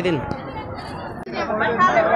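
Only people's voices: a man's spoken word ends at the start, then overlapping background chatter. About a second in, the sound cuts off abruptly and other people start talking.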